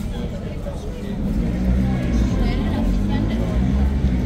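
Low, steady rumble of a vehicle engine that grows louder about a second in, under the chatter of a crowd of people.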